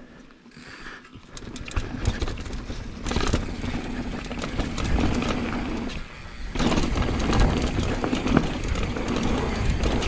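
A YT downhill mountain bike riding fast down a dirt trail: knobby tyres rolling over dirt and rocks with chain and frame rattle, building up over the first few seconds as speed picks up, dropping briefly around six seconds in, then loud again.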